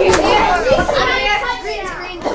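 A group of children's voices talking and calling out over each other at once: loud, excited chatter.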